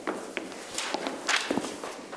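Footsteps of shoes on a hard floor, several uneven steps.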